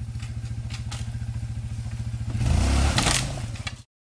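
ATV (quad) engine running with a steady low chug, then revving up louder for under a second about two and a half seconds in, with some clatter as the machine works against a tree. The sound cuts off abruptly near the end.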